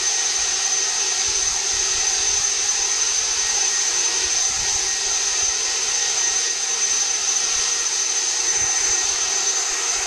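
Cordless electric leaf blower running steadily, blowing leaves: a constant rush of air with a steady high-pitched fan whine.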